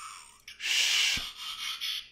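Plastic parts of a Transformers Masterpiece MP-44 Convoy figure scraping and rubbing against each other as the torso and cab pieces are rotated into line by hand. It is a rasping scrape that starts about half a second in and lasts about a second and a half.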